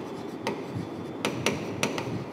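A pen tapping and clicking against the screen of an interactive whiteboard during handwriting: four sharp, irregularly spaced clicks over a steady low hiss.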